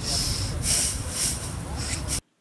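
Wind buffeting the microphone: a steady low rumble with hiss.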